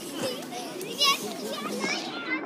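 Many children's voices chattering and calling out together, as on a playground, with a wavering high squeal about a second in.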